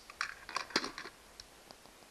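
Light handling clicks and taps, most of them bunched in the first second, as a utility lighter is handled and set down on a wooden floor, followed by a few faint ticks.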